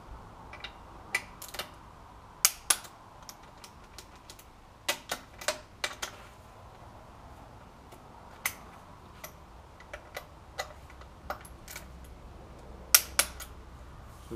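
Sharp, irregular metal clicks from a click-type torque wrench and its ratchet as the oil pump's M8 bolts are tightened to 20 Nm, some clicks coming in quick pairs, the loudest near the end. On such a wrench the single loud click signals that the set torque has been reached.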